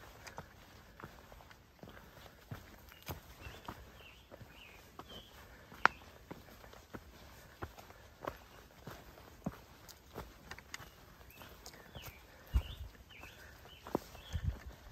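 A hiker's footsteps on a rocky dirt trail: irregular steps with short knocks and scuffs on stone, roughly one or two a second, and one sharper click about six seconds in.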